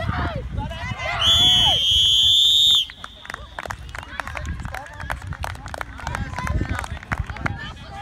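A referee's whistle blown in one long, shrill blast of about a second and a half, the loudest sound, blowing the play dead. Shouting voices come before it, and a run of light clicks and knocks with voices follows.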